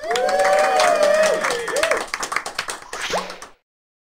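A cartoon character's voice in one long, wavering high cry, followed by a run of light clicks and taps. The sound cuts off abruptly a little after three seconds in.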